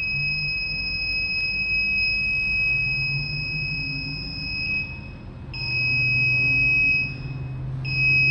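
An electronic warning buzzer on a B2000 air scrubber's control panel holds a steady high tone, breaking off briefly about five seconds in and again near the end, over the low hum of the unit's fan. It sounds together with the red indicator light, which warns that the filters are clogged.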